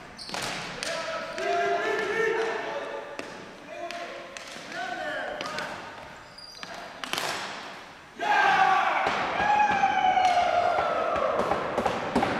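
Ball hockey sticks and the ball clacking and knocking on a gym's hardwood floor, ringing in the hall, with players calling out. About eight seconds in, loud, sustained shouting breaks out as players celebrate.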